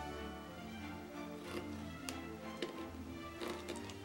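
Soft background music, with a few faint clicks and taps from fingers bending pipe-cleaner spider legs.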